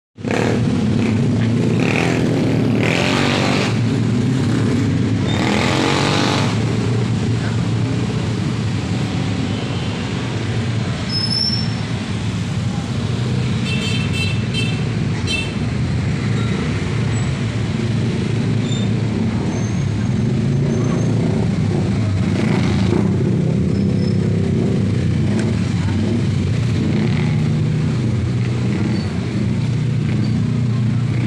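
Congested, slow-moving street traffic: a steady hum of car and motorcycle engines crawling past, with a few vehicles passing louder. A brief high-pitched pulsing tone sounds about halfway through.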